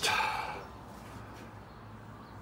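A man's voice trailing off in a brief breathy fade, then quiet room tone with a faint low steady hum.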